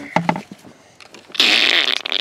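Child car seat harness being buckled and tightened: a few small clicks, then about one and a half seconds in a loud rasping zip as the strap is pulled tight.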